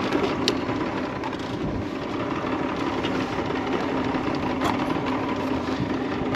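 40 hp outboard motor idling steadily, with a couple of faint clicks over it.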